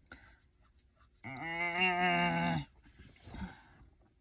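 A woman's wordless voiced sound: one steady, level note held for about a second and a half, followed by a soft breath.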